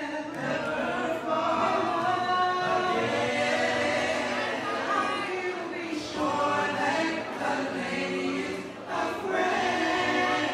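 A cappella vocal group of six young singers singing together in harmony, with no instruments, on held notes that overlap and change every second or so.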